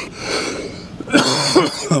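A man coughs twice, harsh breathy bursts, the second running into a murmured "um".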